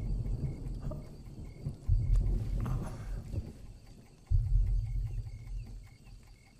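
Faint cricket chirps repeating at an even rate, over a deep low rumble that starts and stops in stretches of about a second each.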